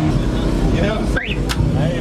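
People talking over a steady low rumble, with a brief rising squeal about a second in and a sharp click just after.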